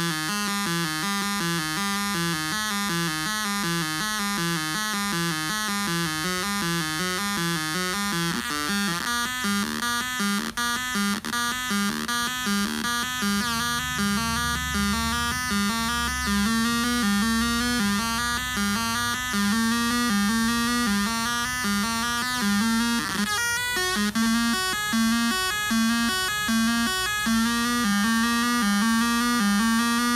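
Homemade cigar box synth built around 555 and 556 timer chips and a 4017 counter, its four-step sequencer looping a buzzy pattern of four pitched notes through its small built-in speaker. The pattern shifts as the tone knobs are turned, changing about nine seconds in and again around twenty-three seconds.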